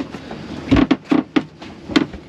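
A series of short knocks and thumps, about six in a second and a half, the first with a low thud: people moving about in a sailboat's cockpit.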